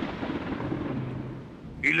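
Deep, thunder-like rumbling sound effect that fades away over about a second and a half, with a low steady hum beneath it. A man's voice starts a word just at the end.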